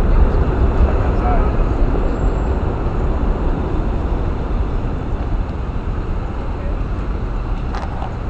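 Steady city street noise dominated by a low traffic rumble, easing slightly toward the end.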